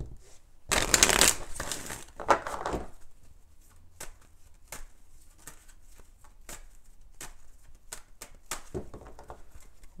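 A deck of tarot cards shuffled by hand. Two longer rushes of shuffling come in the first three seconds, then a run of light, scattered card clicks.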